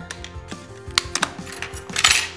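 Background music with several sharp clicks from makeup compacts and tools being handled; the loudest click is about a second in.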